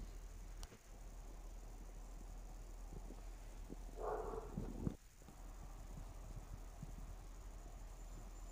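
Faint outdoor background with a low steady hum, broken twice by abrupt cuts, and one brief mid-pitched sound lasting under a second about four seconds in.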